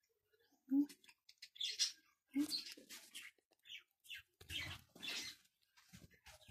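Cat eating from a plastic bowl: irregular wet smacking and chewing, broken by two brief low hums about one and two and a half seconds in.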